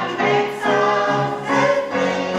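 Song from a stage musical: several voices singing together over instrumental accompaniment with a moving bass line.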